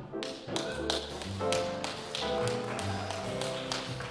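Live jazz quartet of grand piano, upright bass and drum kit playing, with sharp drum taps falling through the piano chords and bass notes.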